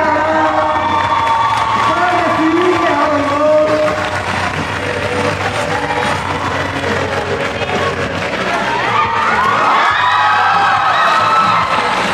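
Stage music over a PA with a voice in it, and an audience cheering and shouting. The crowd is loudest in the last few seconds.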